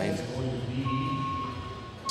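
Low, indistinct voices in an indoor arena, with a thin steady high-pitched tone coming in about a second in.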